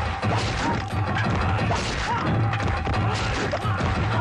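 Film fight sound effects: a rapid run of blows and crashes over a dramatic background score.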